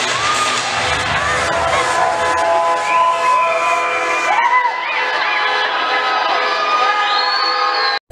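A crowd cheering and shouting over loud dance music; the music's low bass drops out about halfway through.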